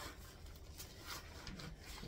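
Faint rustling and rubbing of plastic packaging as a wrapped package of ground beef is handled, with a few light scattered crinkles.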